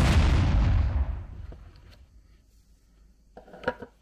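A logo-sting sound effect: a sudden rush of noise over a deep low rumble that fades away over about a second and a half, then quiet.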